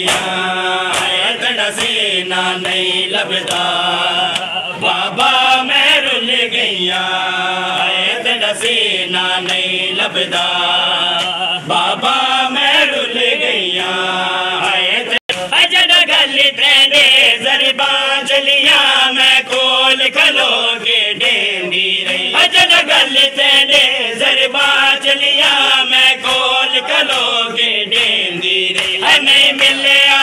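Men's voices chanting a noha together, with the continual hand slaps of mourners beating their chests (matam) in time with it. About halfway the sound briefly cuts out, then comes back louder.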